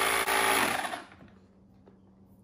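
A small electric pump running with a steady buzz, then winding down and stopping about a second in.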